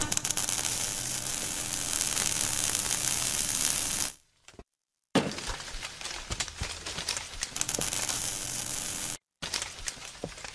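Sound effects of an animated logo intro: a dense crackling, glassy noise for about four seconds, a second of silence, then another crackling stretch full of sharp clicks, broken by a brief silence shortly before the end.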